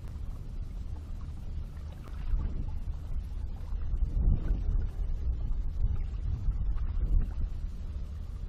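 Wind buffeting an outdoor microphone: a low rumble that swells and eases, louder a couple of seconds in and again around the middle.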